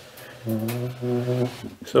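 A man's voice holding a steady, flat-pitched 'umm' for about a second, a hesitation before he starts speaking again at the end.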